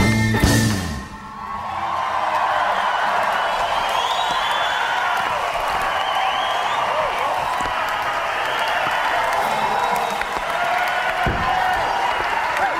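The last strokes of a taiko-drum and Irish band piece ending about a second in, followed by a live audience applauding and cheering steadily.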